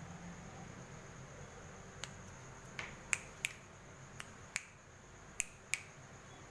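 A series of about nine sharp, irregularly spaced clicks in the second half, over a faint steady high-pitched tone.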